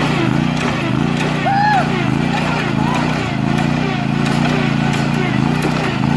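Zero-turn riding mower's engine running steadily as the mower drives across the lawn.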